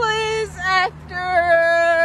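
A woman singing without words in long held notes: a steady note, a short higher one, then a long even note of over a second.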